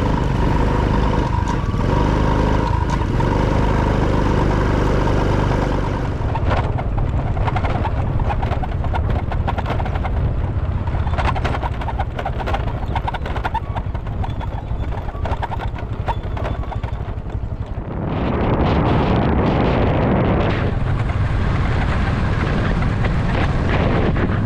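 Honda motor scooter being ridden, its small engine running steadily under wind and road noise. About six seconds in, the steady engine tone gives way to rougher, crackling wind buffeting and rumble. About eighteen seconds in, a louder rush of wind noise takes over.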